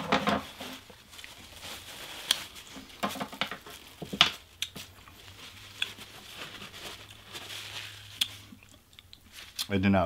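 Close-up chewing of a cheeseburger, with scattered sharp mouth clicks and smacks, over a faint steady low hum.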